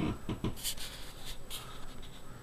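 A man's short laugh trails off at the start, then two brief scratchy rustles of handling noise.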